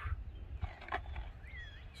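Quiet outdoor background: a few faint bird chirps, one pair about one and a half seconds in, over a low rumble.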